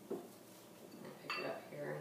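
Bamboo matcha whisk scraping faintly in a ceramic bowl as matcha powder is mashed into a paste, with one sharp clink from the bowl about a second and a half in.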